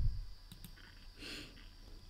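A few soft computer mouse clicks against quiet room tone.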